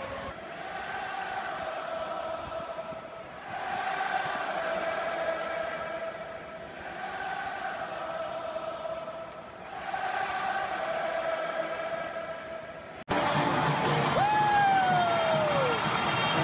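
Stadium crowd chanting in unison, the same phrase repeated four times, about every three seconds. About thirteen seconds in it cuts abruptly to louder music with sliding tones.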